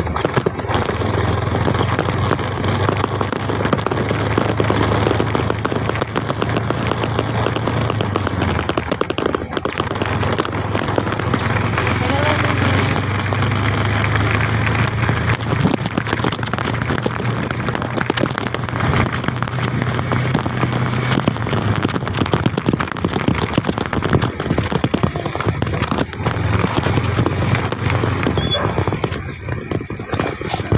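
Open vehicle on the move: a steady low engine hum under heavy wind rushing and buffeting on the phone's microphone. The hum drops out briefly a few times.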